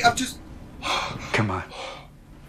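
A man's breathy gasps with a short falling vocal exclamation between them, a startled reaction.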